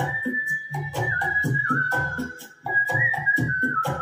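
A man whistles the melody of a 1960s Hindi film song over a karaoke backing track with a steady beat and bass. The whistled line holds long notes that step down in pitch, with a short rise about three seconds in.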